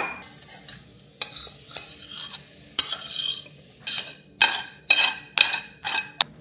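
A stainless steel pan and utensil knocking and scraping against a ceramic bowl as food is served into it. Sharp clinks come irregularly at first, then about twice a second in the second half.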